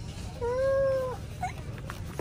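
A single drawn-out high call from an unseen person or animal, rising then falling in pitch, starting about half a second in and lasting under a second.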